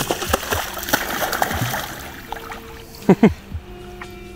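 A large carp splashing back into shallow water as it is released by hand, a burst of splashing that fades over the first two seconds. About three seconds in there are two short, loud shouts.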